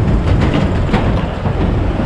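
Fast mountain river rushing over rocks below a bridge: a loud, steady roar of water, heaviest in the low end.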